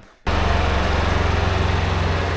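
Polaris Ranger side-by-side's engine running steadily, a low hum under an even hiss, starting abruptly about a quarter second in.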